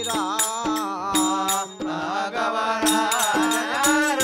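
Telugu devotional bhajan singing (a Pandarinath tattvam) over a sustained harmonium note, with small hand cymbals (talam) striking a steady beat about twice a second.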